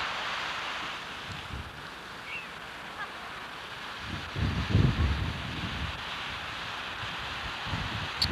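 Steady surf and wind on an open beach, with wind buffeting the microphone in a loud gust about halfway through.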